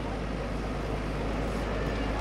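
Steady outdoor street ambience, dominated by a low rumble.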